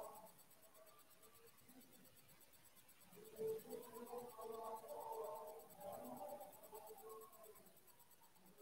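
Near silence of room tone, with a faint, distant voice from about three seconds in that fades out shortly before the end.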